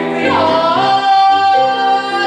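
A male singer performing a musical-theatre song with grand piano accompaniment, holding one long note from about half a second in.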